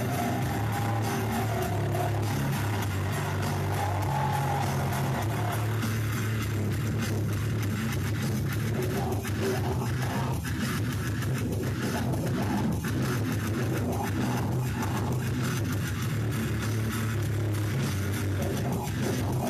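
A goregrind band playing live: heavily distorted electric guitars and bass over drums, a dense, unbroken wall of sound.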